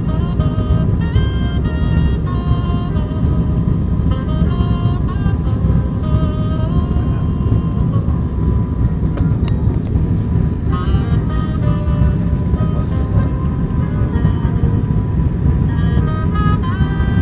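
Steady low rumble of an ATR 72-500's twin turboprop engines heard inside the cabin, with a melody of music playing over it.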